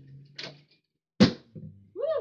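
Plastic water bottle flipped onto a wooden nightstand: a light knock early on, then a louder thunk a little over a second in, followed by a smaller knock as it settles or tips.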